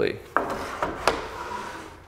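Wooden baseboard set down on a miter saw and slid against its fence: a knock, then about a second of scraping with a couple of small clicks.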